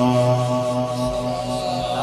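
A man's voice holding one long, steady chanted note, the drawn-out close of a recited Quranic verse, fading near the end.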